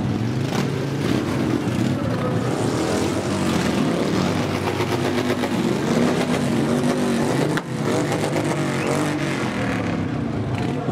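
Motorcycle engines running as a line of bikes rolls slowly past at low speed, their pitch rising and falling as riders blip the throttle.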